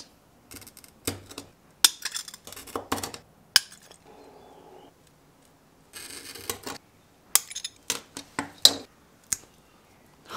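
Stained glass being worked with a glass cutter and running pliers: scattered sharp clinks and taps of glass and tools on the work board, a brief scratchy score of the cutter wheel across the glass a little past the middle, then a quick run of sharp snaps and clicks as the scored glass breaks.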